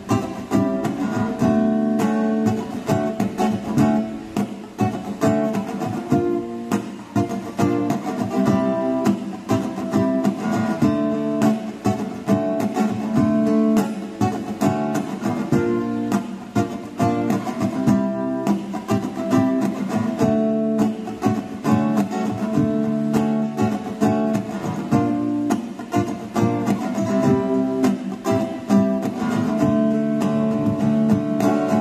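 Steel-string acoustic guitar, amplified through a PA, strummed in a steady rhythm through an instrumental break of a live song.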